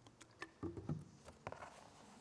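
Water poured from a plastic bottle pattering onto a water-repellent, lotus-effect tablecloth, where it runs straight off instead of soaking in. It is heard as a few faint pats and clicks, the clearest a little after the middle, along with handling of the plastic bottle.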